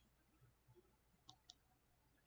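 Near silence, broken by two faint short clicks a quarter of a second apart, about a second and a half in.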